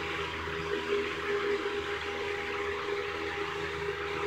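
Steady background hiss with a faint low hum, even throughout.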